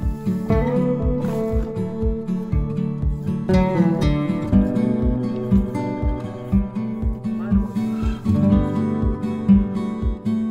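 Background music: guitar over a steady low beat about twice a second.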